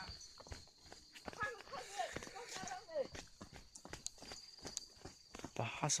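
Footsteps on a dirt path, a quick irregular run of short knocks, with snatches of a voice in between and a voice starting right at the end.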